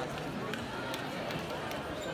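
Sports hall ambience: indistinct voices echoing around the arena over a steady background hubbub, with a few faint light taps.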